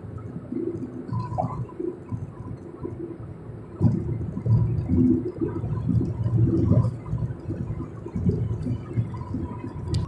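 Low, uneven rumble of road and engine noise heard from inside a moving car's cabin, swelling louder for a few seconds in the middle.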